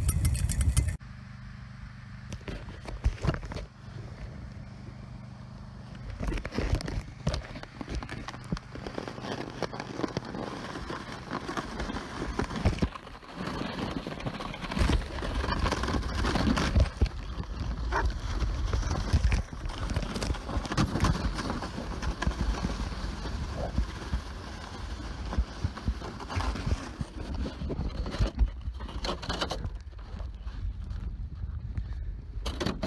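Plastic sled being towed up a snowy hill on a homemade rope tow, its hull scraping and rattling unevenly over the snow. A steady low hum comes first, for a few seconds.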